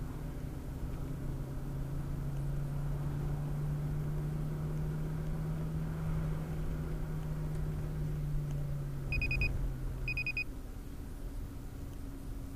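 Car engine and tyre noise heard inside the cabin. The engine note rises a little as the car accelerates to overtake, then drops away about ten seconds in as the driver eases off. Near the end come two short, high electronic beeps about a second apart.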